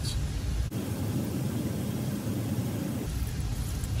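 Parts-washer solvent stream splashing over a small carburetor part held under the nozzle. An even hiss sets in abruptly under a second in and cuts off just after three seconds.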